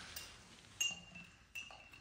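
A metal teapot and china cups and saucers clinking: a few light, sharp clinks, the loudest just under a second in, followed by a faint ringing.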